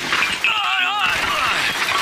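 Cartoon crash of a wooden table collapsing and crockery smashing, starting suddenly about half a second in, with a wavering voice-like cry over the first part of it.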